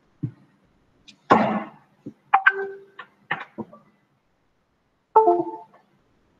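Intermittent knocks and clanks with a few short ringing tones. The loudest burst comes about a second in, with another short ringing sound near the end.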